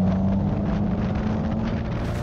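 Subaru Impreza GC8's turbocharged flat-four engine running under load on track, heard from a camera on the car's side with wind and road noise. The engine note holds nearly steady, rising slightly and easing off near the end.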